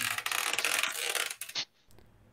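Small screwdriver scraping and clicking against a laptop's plastic bottom panel and rubber bumper strip: a dense, rapid crackle for about a second and a half, then one short burst.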